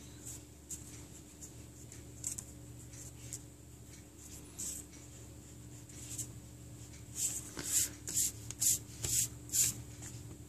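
Mechanical pencil on paper: faint, scattered scratching strokes, then a run of louder back-and-forth rubs on the paper, about two a second, in the last three seconds.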